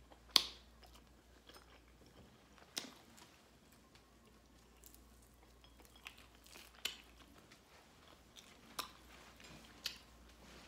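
A person chewing fried pork chop, with a few sharp mouth clicks a second or two apart, the loudest just under half a second in.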